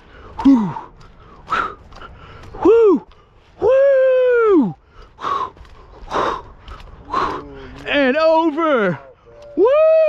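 Men whooping 'woo' several times, with one long held whoop about four seconds in and heavy breathing between the shouts.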